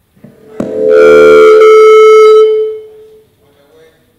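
Loud public-address microphone feedback: a sharp knock, then one steady, single-pitched tone that holds for about two seconds and fades away.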